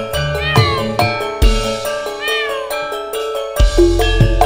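Campursari gamelan music: bronze saron metallophones struck with mallets in a steady run of ringing notes, over kendang drum and keyboard. Two short high gliding sounds come a little over half a second in and at about two and a quarter seconds. The low drum and bass drop out midway and come back with a deep stroke near the end.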